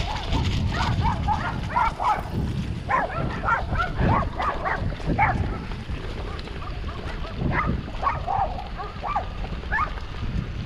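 A dog barking repeatedly in short calls, in bouts with a lull about midway. Underneath runs a steady low rumble of wind and of mountain bike tyres rolling over grass.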